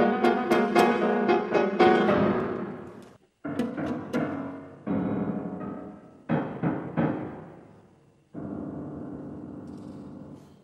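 Piano playing a dense passage that dies away about three seconds in, followed by separate struck chords, each left to ring and fade with short silences between, then a steady held sound near the end.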